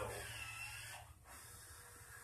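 A film soundtrack playing from a TV's speakers during a pause in the dialogue: a steady low hum and faint room noise, quieter after about a second.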